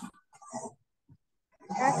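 Short, clipped fragments of a voice, then a person starts speaking clearly near the end.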